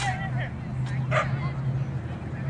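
A dog's short, high, squealing yips, which the owner calls pig noises. A steady low hum runs underneath.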